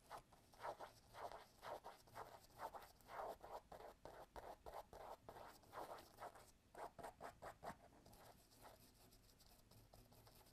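Faint scratching of a small paintbrush's bristles dabbed and stroked on the mural surface, many short strokes in quick succession that thin out after about eight seconds.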